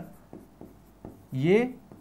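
Marker pen writing on a whiteboard: a quick series of short, faint strokes as a word is written.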